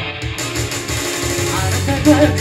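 Live rock band playing an instrumental passage with guitar over a pulsing low bass. The singer's voice comes in near the end.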